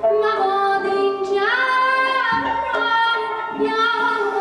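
A woman singing a Persian classical song in long, held, ornamented notes, with a few low tombak drum strokes beneath the voice.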